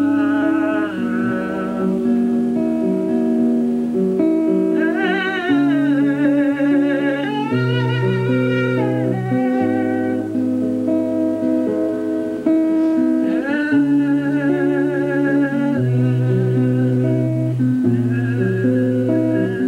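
Acoustic guitar played with a man singing, his voice holding long, wavering notes twice: about five seconds in and again past the middle.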